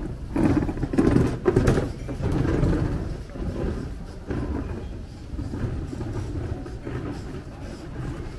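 Outdoor ambience of a busy pedestrian shopping street: passers-by talking, over an uneven low rumble that is loudest in the first three seconds.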